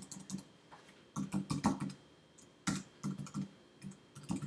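Typing on a computer keyboard: quick keystrokes in three or four short bursts, with brief pauses between them.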